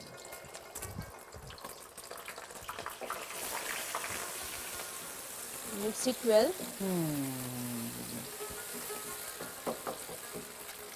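Beaten eggs sizzling in hot oil in a wok as they are scrambled with a wooden spoon; the sizzle comes up about three seconds in. A brief gliding pitched sound rises over it about six seconds in.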